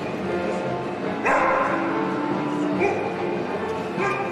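Border collie barking: one loud bark about a second in and a shorter one near three seconds, over instrumental routine music.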